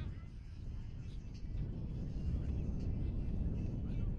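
Wind rumbling on the microphone in a steady low buffeting, with faint voices in the background.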